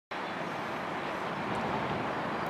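Steady background rumble of distant road traffic, with no single vehicle standing out.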